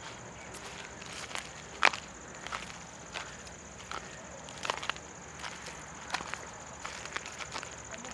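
Footsteps crunching over dry, ploughed field ground and stubble: irregular short crackles and snaps, with one sharper crack about two seconds in.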